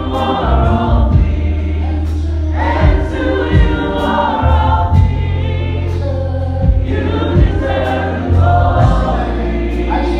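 Live worship band performing a gospel-style song: several singers in harmony over electric bass, with drum hits.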